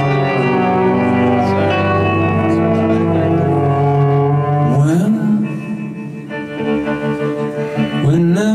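Live music from an electric guitar and an acoustic guitar playing sustained chords. About five seconds in, a wordless sung note slides up in pitch.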